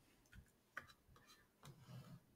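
A few faint computer keyboard key clicks, scattered and irregular, as the typed command is erased. Otherwise near silence.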